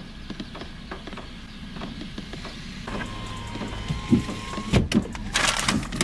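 Rain pattering on a car's roof, heard from inside the cabin as scattered light ticks. Near the end comes a louder crackle of a paper takeout bag being handled.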